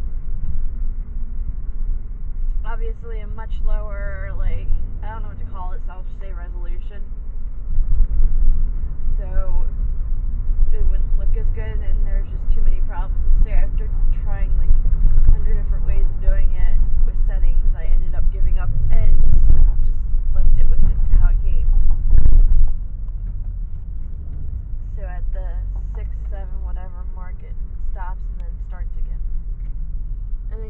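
Car cabin road and engine rumble while driving. It grows louder through the middle stretch and drops suddenly a little after twenty seconds, with talk over it.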